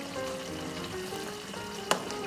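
Tomato sauce simmering and sizzling in a frying pan as gnocchi are skimmed into it, with a single sharp click near the end as the wire skimmer goes back into the pot. Soft background music with a simple melody underneath.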